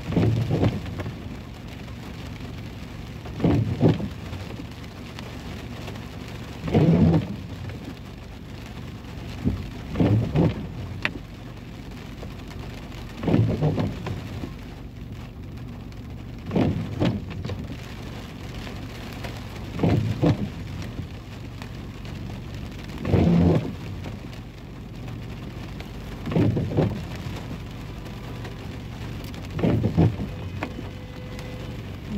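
Steady rain falling on a car, with the windshield wipers making a short pass about every three seconds, ten passes in all.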